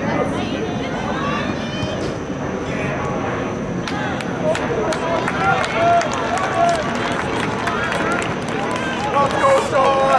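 Shouting voices of soccer players and the sideline calling out across the field during play, over a steady outdoor background, with a few sharp knocks. The calls are loudest about halfway through and near the end.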